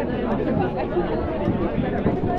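Crowd chatter: many people talking at once in a dense crowd, a steady babble of overlapping voices.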